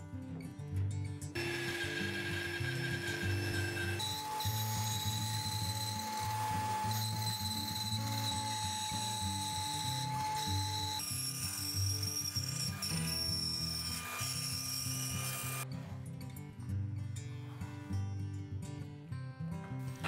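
Wooden-framed bandsaw running and cutting plywood, with a steady high whine over the cutting noise, under background music; the saw stops a little over four seconds before the end, leaving the music alone.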